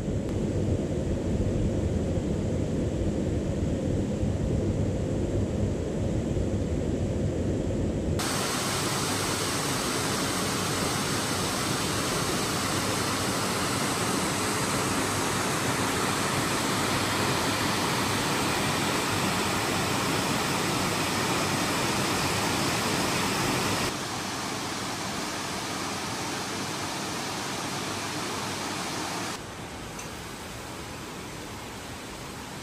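Waterfall rushing as a steady hiss of falling water. For the first eight seconds it is a deeper, muffled rumble. Then it cuts to a brighter, fuller rush, which drops in level a few seconds before the end.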